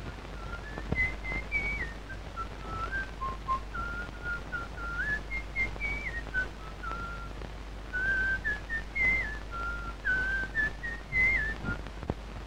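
A man whistling a simple tune in short stepped notes, the same rising phrase coming back about every four seconds, over the hiss and hum of an old film soundtrack. The whistling stops near the end.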